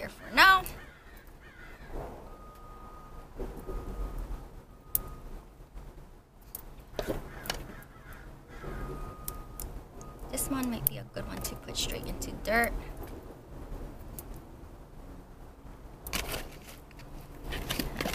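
Several harsh bird calls, each falling in pitch: one right at the start and a pair around the middle. Light clicks and rustling come from succulent cuttings being handled among glass bottles.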